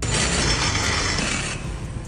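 A steady rush of street noise with light mechanical clicking and rattling from bicycles being ridden, louder for the first second and a half and then dropping.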